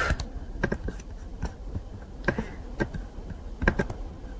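Irregular clicking of a computer mouse and keyboard during desktop work, about a dozen separate short clicks, some in quick pairs.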